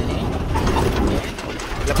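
Palm-oil lorry running on a dirt road, heard from inside the cab, with a low engine rumble and mechanical rattling and clicking; the sound drops a little in level about halfway through.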